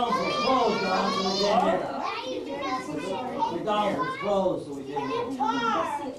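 Several children's voices chattering and calling out over one another, high-pitched and continuous.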